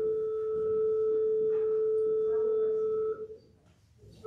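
A single pipe organ note held steady, a pure flute-like tone, released about three seconds in, followed by a brief hush.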